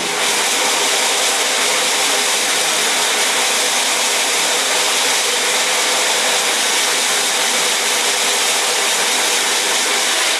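Steady hiss of a water jet from a hose spray nozzle striking an emulsion-coated screen-printing screen, washing the unexposed emulsion out to open the stencil.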